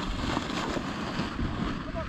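Wind buffeting the microphone, with dry cattail and reed stalks rustling as a person pushes through them on foot.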